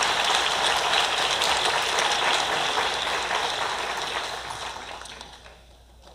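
Audience clapping in a round of applause, holding steady and then dying away over the last couple of seconds.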